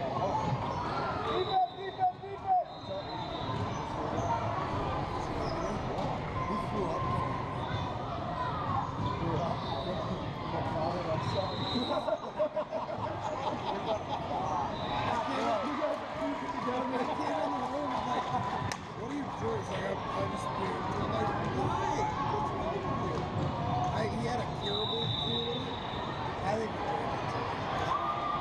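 Sounds of a youth basketball game in an echoing gym: a basketball bouncing on the hardwood court, mixed with the chatter and calls of players and spectators.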